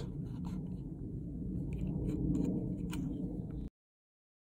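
Faint handling noise of a hand-held dial gauge and its spark-plug adapter: light rubbing and a few small clicks over a low steady rumble. The sound cuts off suddenly near the end.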